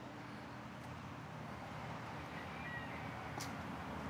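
Faint outdoor background with a low steady hum, and one soft click about three and a half seconds in.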